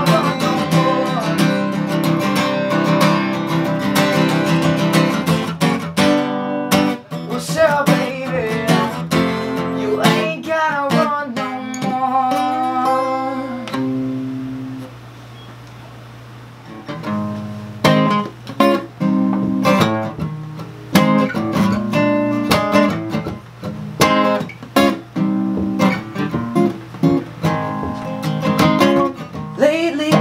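Acoustic guitar played live: strummed chords, then a picked melodic passage. Near the middle it dies down to a single fading note before strumming resumes.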